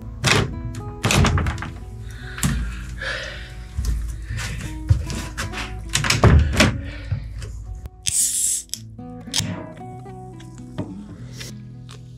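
Background music with steady held notes, over which come a string of dull thumps and knocks and a brief hiss about eight seconds in.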